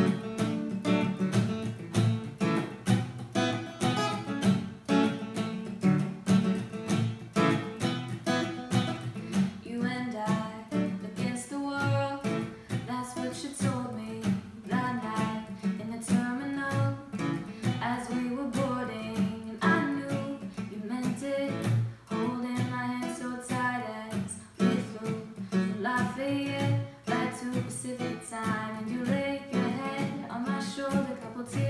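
Taylor acoustic guitar strummed in a steady rhythm as a song intro. About ten seconds in, a young woman's voice begins singing over it.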